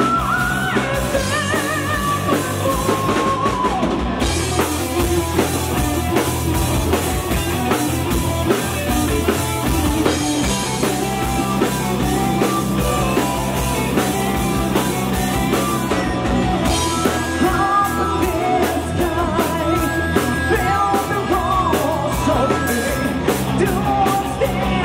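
Power metal band playing live: distorted electric guitars, bass, keyboard and a drum kit, playing on without a break.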